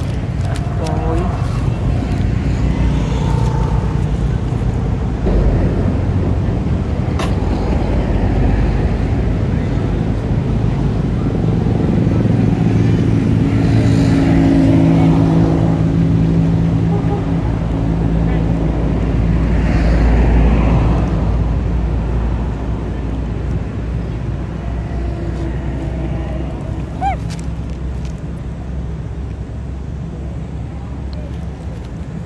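Motor vehicle engine running nearby, a steady low hum that grows louder around the middle, with voices in the background.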